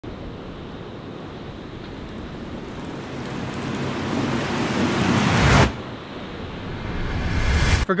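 Ocean surf: the rushing hiss of breaking waves, swelling to a loud peak a little past halfway, dropping off suddenly, then building again and cutting off abruptly near the end.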